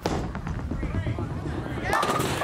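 Bowling ball released onto the wooden lane with a thud, then rolling with a steady low rumble. It crashes into the pins near the end.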